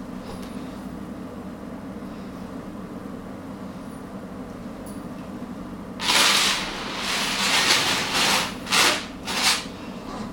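Heavy chainmail hauberk of butted galvanized-steel rings jingling and rattling as it is lowered and set down on a wooden floor: a long rush of ring noise starting about six seconds in, then a few shorter clinking bursts. Before that, only a steady low hum.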